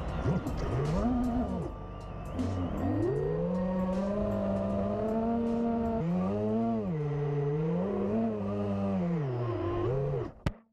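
FPV racing quadcopter's brushless motors and propellers whining, the pitch swooping up and down with throttle changes, steady for a few seconds in the middle, then falling away at the end.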